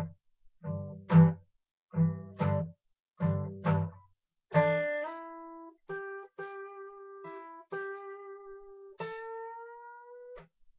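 Steel-string acoustic guitar played slowly, note by note: a blues lick in G, in short groups of plucked notes with brief gaps. It ends on a lightly bent note that rises a little in pitch.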